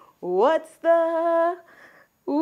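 A voice singing: one note sliding upward, then a second note held steady for under a second.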